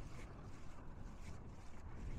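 Wind buffeting the microphone in an irregular low rumble, with faint footsteps ticking about twice a second.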